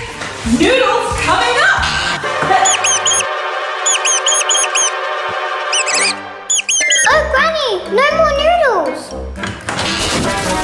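Cartoon mouse squeak sound effect: quick groups of short, very high squeaks from about two and a half seconds in until about six seconds, over cheerful background music. Swooping, sliding tones follow near the end.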